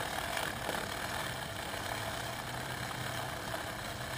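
Bicycle chain being back-pedalled through a clip-on chain cleaner filled with degreasing solvent, its rotating brushes scrubbing the chain: a steady, even running noise.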